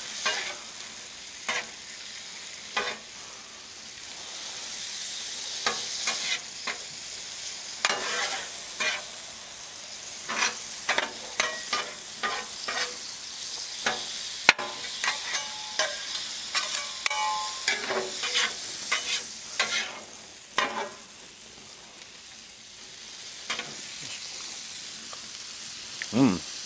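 Butter, white wine and lemon juice sizzling as the sauce reduces and thickens on a Blackstone flat-top griddle, while a metal spatula scrapes and taps the griddle's steel surface in quick runs, stirring the zucchini noodles through it.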